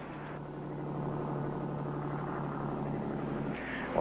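A steady low droning hum holding one pitch, swelling slightly after the first second.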